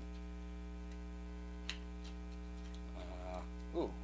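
Steady electrical hum with a stack of even overtones, with one light click about halfway through and a short spoken 'ooh' near the end.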